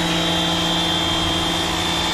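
Electric pressure washer running steadily, its motor and pump giving an even hum over the hiss of the water jet spraying a car's wheel.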